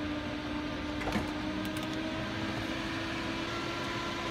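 Steady hum of aircraft systems running on ground power, holding one steady tone, with a light click about a second in.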